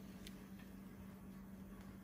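Near silence: room tone with a faint steady low hum and one soft click about a quarter second in.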